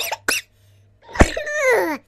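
Comic vocal sound effects: a short burst near the start, then about a second in a sharp cough-like burst and a voice sliding smoothly down in pitch.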